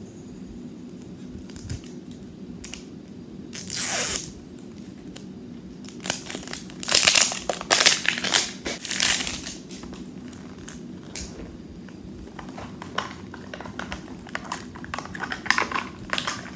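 The plastic wrapping of a Mini Brands capsule ball being torn open and crinkled by hand: one ripping tear about four seconds in, then a few seconds of dense crinkling, then scattered small rustles and clicks near the end.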